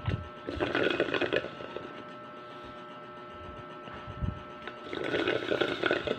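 A person slurping milk tea from a plastic cup: two noisy slurps, one about a second in and a longer one near the end.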